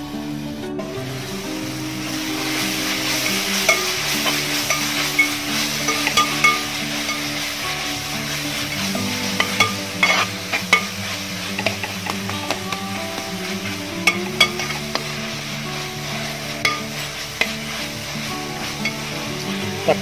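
Sliced onions and tomatoes frying in a metal pan for a curry masala, sizzling steadily from about a second in. A spatula stirs and scrapes across the bottom of the pan with irregular clicks.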